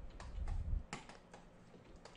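Light clicks of computer keys, about five scattered over two seconds, over a low rumble that stops suddenly a little before a second in.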